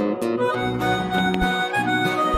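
Live band music led by a harmonica playing the melody in held notes, with acoustic guitar strumming underneath and a low drum beat.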